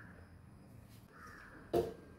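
A bird calling twice in the background, harsh and brief, over quiet kitchen room tone, followed by a single sharp knock near the end.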